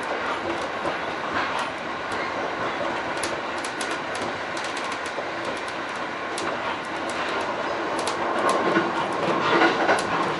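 E531 series electric train running at speed, heard from the driver's cab: steady wheel-on-rail noise with sharp clicks of the wheels over the track, the clicks louder and more frequent near the end.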